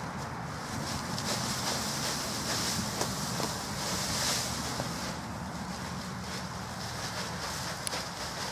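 Dry leaves rustling as they pour and are shaken out of a plastic bag, with the bag itself crinkling, over a steady rumble of wind on the microphone.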